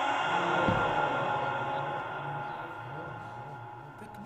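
The reverberation of a man's melodic Qur'an recitation, carried by a microphone and loudspeakers in a large hall, fading away after a long phrase ends, with a faint low murmur of voices under it. A soft knock comes a little under a second in.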